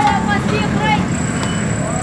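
Busy street-market background: people talking and a steady hum of traffic, with a couple of sharp clicks. A thin, high, steady whine comes in about a second in.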